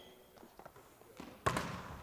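A volleyball struck sharply about one and a half seconds in, echoing in the gym, with another hit at the very end; before that there are only a few faint ticks.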